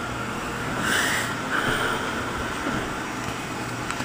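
Steady indoor background hum and hiss with no clear event, swelling briefly into a rustling noise about a second in.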